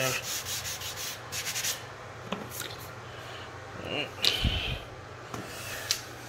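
A hand sanding pad rubbing over fresh wood filler in a hardwood floor: a quick run of scratchy strokes in the first two seconds, then a few scattered scrapes and a dull thump about four and a half seconds in.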